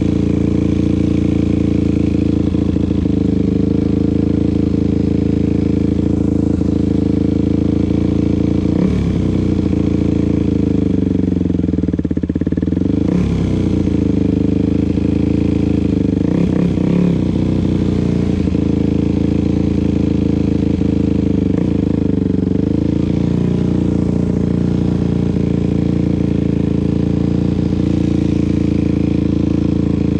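Dirt bike engine idling steadily, with a few brief revs near the middle.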